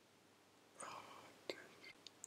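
Near silence with room tone, broken by a faint soft noise about a second in and a few small clicks, the sharpest about halfway through.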